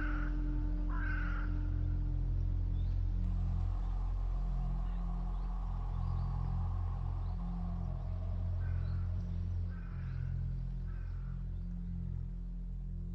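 A conch shell sounds one held note over a low steady drone, stopping about three seconds in. Short high calls come three times at the start and three times near the end, while the drone carries on.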